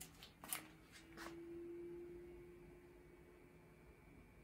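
A few faint clicks, then a faint steady low hum with a thin high whine that comes in about half a second in and slowly fades. This is an Artillery Sidewinder X1 3D printer's fans and power supply starting up as it is switched on.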